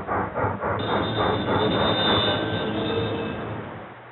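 Recorded steam locomotive sound effect: rhythmic chuffing, with a steam whistle of several steady high tones joining about a second in, then fading toward the end.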